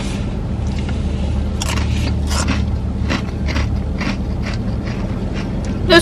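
Plastic snack bag crinkling now and then as it is handled, short sharp crackles over a steady low hum in a car cabin.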